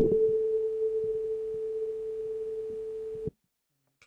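Tuning fork flicked with a finger, ringing with a single clear, pure tone held steady and picked up through a handheld microphone. The tone cuts off suddenly a little over three seconds in.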